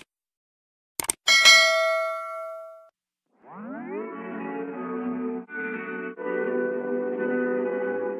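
Two quick clicks, then a bright bell-like ding that rings out for about a second and a half: the sound effect of a subscribe-and-notification-bell animation. About three and a half seconds in, upbeat background music starts, sliding up in pitch as it comes in and settling into sustained chords.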